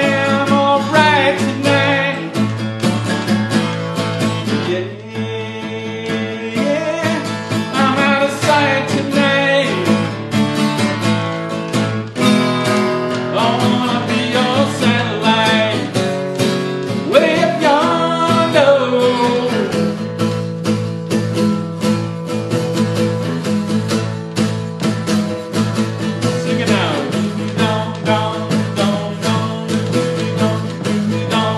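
A man singing a country-rock song to his own guitar; the voice stops about two-thirds of the way through and the guitar plays on alone.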